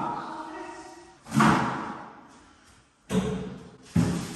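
A thump about a second in that rings on in the bare room, then after a short silence another knock-like sound and a sharp knock near the end, from furniture and rubbish being handled.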